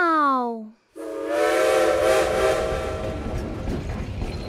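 A short pitched tone rises and falls; then, about a second in, a steam locomotive whistle sounds a chord of several notes over hissing steam for about two seconds, followed by continuing steam hiss and rumble.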